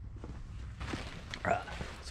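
Footsteps and rustling of fabric as a person walks out through a tent's door, with a short hiss from about the middle on, and a brief spoken 'uh' about one and a half seconds in.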